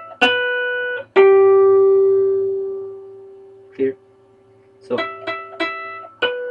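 Electric guitar natural harmonics: one bell-like harmonic, then a harmonic on the third string that rings and fades for about two seconds, then a quick run of about four repeated harmonics near the end.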